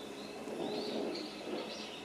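Faint outdoor forest ambience with a few short, high bird chirps scattered through it.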